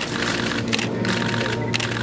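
Camera shutters clicking in rapid bursts, four or so short runs in two seconds, over a steady low hum.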